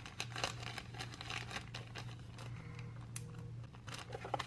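Clear plastic specimen bag crinkling and crackling in irregular quick bursts as it is handled and its seal is pressed shut.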